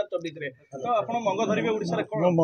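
Speech only: a man talking, with a short pause about half a second in.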